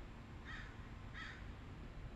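A bird calling twice, two short harsh calls under a second apart, over faint steady outdoor background noise.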